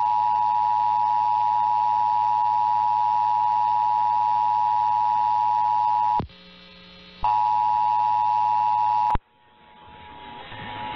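Emergency Alert System two-tone attention signal (853 and 960 Hz) received over AM radio, a loud steady dual tone. It drops out for about a second around six seconds in, resumes, and cuts off abruptly a little before the end, giving way to faint rising receiver noise.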